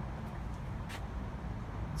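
Steady low background hum with a single sharp click about a second in.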